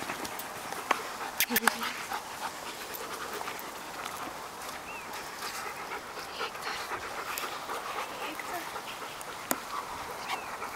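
German Shepherd dogs panting, with several sharp clicks in the first two seconds.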